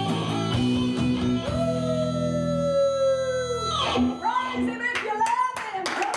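Electric guitar playing chords; a long held final chord slowly sags in pitch and drops away just before four seconds in. Voices then call out over a few sharp hand claps.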